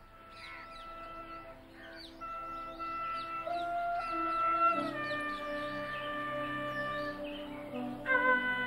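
Slow flute melody in long held notes over a low drone, with small birds chirping throughout.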